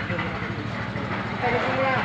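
An engine runs steadily with a low, even rumble, typical of machinery at a concrete slab pour. A man's voice breaks in briefly near the end.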